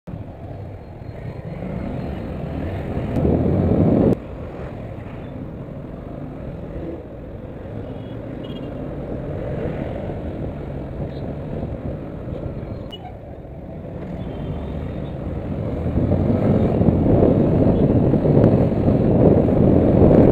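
Riding noise on a moving Yamaha FZS V3 motorcycle: wind rushing over the rider's camera microphone, with traffic around. A louder rush cuts off suddenly about four seconds in, and the noise grows louder over the last few seconds.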